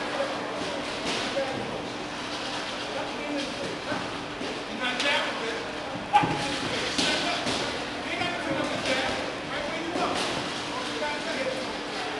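Sparring in a boxing gym: thuds of gloved punches and footwork on the ring canvas over indistinct voices echoing in a large hall, with one sharp, loud thud about six seconds in.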